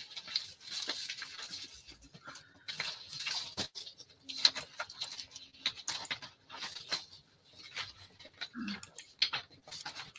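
Sheets of paper rustling and being shuffled by hand in quick, irregular crinkles and slides, as someone searches through piles of papers.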